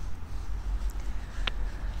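Low, uneven rumble of wind buffeting the microphone, with one faint click about one and a half seconds in.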